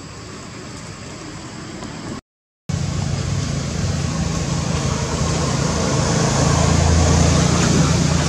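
Steady outdoor noise with a faint high hum, broken by a brief dead dropout about two seconds in; after it a louder, low rumbling noise runs on.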